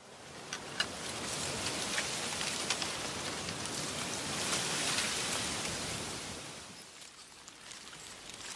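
A rushing hiss with scattered clicks, fading in from silence, swelling to its loudest about five seconds in, then easing off near the end.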